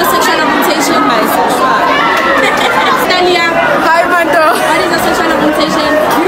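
Speech only: several voices talking over one another.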